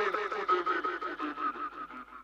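The fading tail of an electronic trance track: with the beat gone, a quickly repeating synth figure of short gliding notes echoes on, growing fainter until it dies away at the end.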